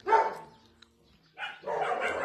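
Dogs barking: one bark right at the start, a short lull, then more barking and whining that starts about a second and a half in.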